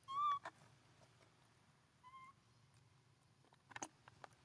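A young macaque giving a short, clear, pitched coo right at the start, then a shorter, fainter one about two seconds in. A few faint clicks follow the first call and come again near the end.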